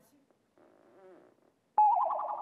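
Near quiet with a faint murmured voice, then, near the end, a sudden loud pitched sound effect with a steady tone, laid in at the cut to the bedroom footage.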